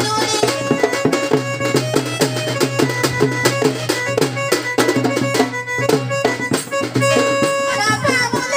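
Instrumental folk music: a reedy melody of long held notes over a quick, busy drum beat, with no singing.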